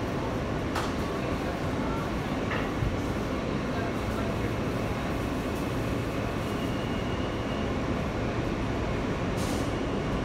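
New York City subway car running on the rails, heard from inside the car as a steady rumble, with a few light clicks and a short hiss near the end.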